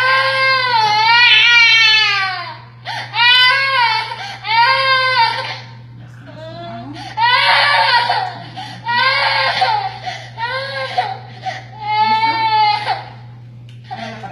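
Infant crying in distress while a coin lodged in its throat is being removed: about seven long, high wails, each one to three seconds, broken by short breaths.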